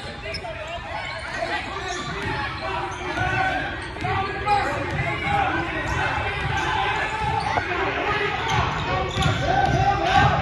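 Basketball being dribbled on a hardwood gym floor during a game, amid the chatter and shouts of players and spectators echoing in the gym.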